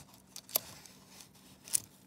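Nickels clicking lightly against each other as one coin is worked out of an opened paper-wrapped roll, about three short clicks with faint paper rustle.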